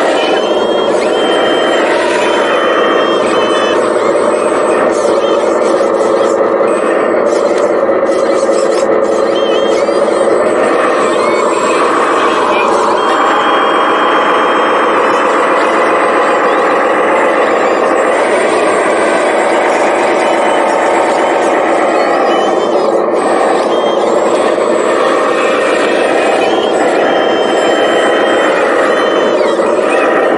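Continuous whine from a radio-controlled scale wheel loader's electric motors and gearing as it drives and works its bucket, the pitch wavering up and down with the load.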